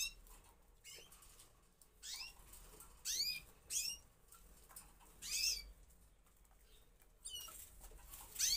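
Caged Gloster canaries chirping: about five short calls that drop in pitch, spread out with pauses between them.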